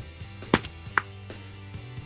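Slap bracelet slapped onto a wrist: two sharp snaps about half a second apart, the first louder.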